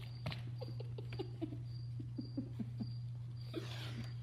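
A child's stifled giggling: a string of short, falling squeaky sounds with a few light clicks, over a steady low hum.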